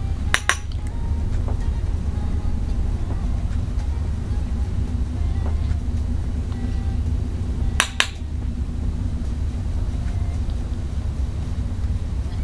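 A steady low hum with two short, sharp clicks, each a quick double click, about half a second in and again near eight seconds in.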